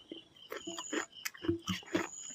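Close-up wet chewing and lip-smacking of a mouthful of rice eaten by hand: a quick, irregular string of short clicks and smacks.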